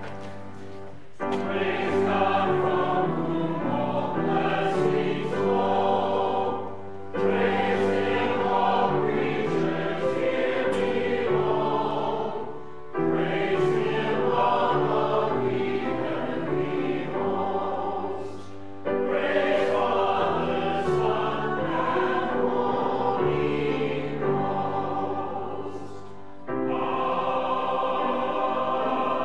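Church choir singing in phrases of about six seconds, with a short break between each phrase.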